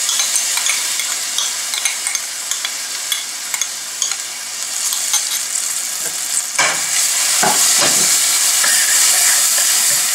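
Ginger-garlic paste sizzling as it fries in hot butter and oil in a stainless steel pan. About two-thirds of the way through, a spoon starts stirring and scraping the paste around the pan with light knocks on the metal, and the sizzle grows louder.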